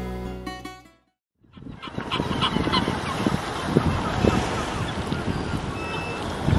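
Plucked-string music fades out in the first second. After a brief silence, a flock of gulls calls over a steady rushing background noise.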